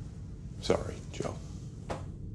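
A man's soft whispered, breathy vocal sounds, three short ones, over a low steady hum.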